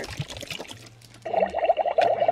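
Liquid trickling from a small plastic bottle into a plastic toy cauldron. A little over a second in, a louder, rapidly pulsing gurgle starts and keeps going.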